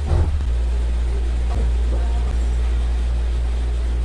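A steady low hum with no speech over it, and a short burst of noise right at the start.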